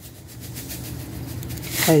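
Salt being added to a pan of milk and farina: a soft, gritty rasping that grows and is loudest near the end.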